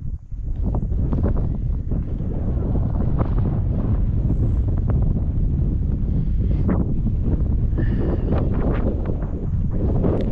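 Wind buffeting the camera microphone: a continuous low rumble that rises and falls with the gusts.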